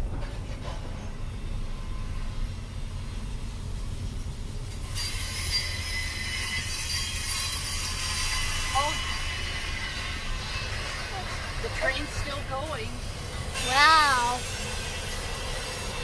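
Train wheels squealing on the rails: a high-pitched metallic screech of several steady tones that sets in about five seconds in and dies away around twelve seconds, heard from inside a car over the low rumble of its engine.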